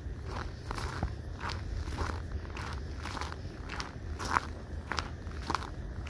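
Footsteps on packed snow, about two steps a second.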